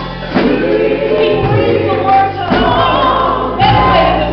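Live gospel music: a woman singing lead into a microphone with choir voices and instrumental backing, sustained low notes underneath that change partway through.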